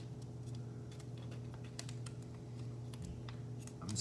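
Origami paper crinkling and clicking between the fingers as it is creased and pinched into shape: a scatter of small irregular ticks over a low steady hum.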